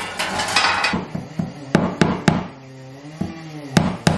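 Hammer striking a nail into a wall: three quick taps a little before halfway, then one more sharp strike near the end.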